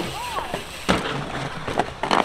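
Dirt jump bike rolling over loose dirt, with a sharp knock about a second in and a couple of smaller knocks near the end.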